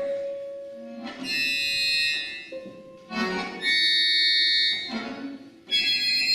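A large mixed ensemble with accordions plays loud held chords in three blocks, each a second or two long and cut off sharply. A single held note sounds in the gaps between them.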